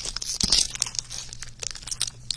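Trading-card pack wrappers and packaging crinkling and crackling as hands handle them on a table, with a soft thump about half a second in.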